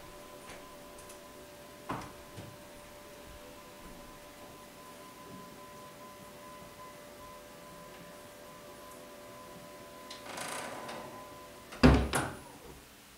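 Motorised TV lift running with a steady hum as it lowers a television into a sideboard, with a click about two seconds in. Near the end the hum stops, and a brief scraping noise is followed by a sharp knock as the lift closes.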